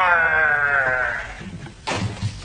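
A child's long drawn-out cry, falling slowly in pitch and fading out about a second and a half in, followed near the end by a short knock.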